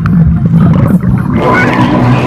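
Water churning over a camera's microphone as it goes under the surface of a pool: a loud, muffled low rumble.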